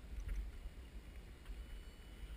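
Faint water movement and low rumble as someone wades and works equipment in a shallow stream, with a thin steady high tone coming in about a quarter of the way in.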